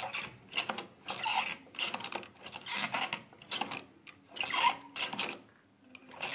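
Miniature model hand pump worked by its lever handle: repeated scraping, squeaky strokes of the small mechanism, roughly one or two a second, dying away just before the end.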